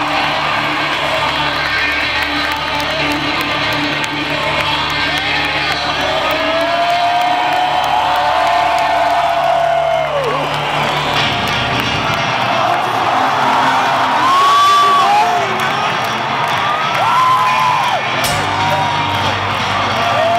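Live stadium rock concert between songs: held low electric guitar and bass tones that die away about eleven seconds in, over a large cheering crowd, with rising and falling gliding tones throughout.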